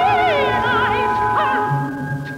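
Twentieth-century orchestral opera music: sustained orchestral chords, with a high voice in wide vibrato holding a note that breaks off about half a second in, and brief wavering high phrases after it.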